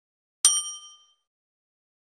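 A single bright bell-like ding sound effect, marking the notification bell icon being clicked. It comes about half a second in and rings out, fading within about half a second.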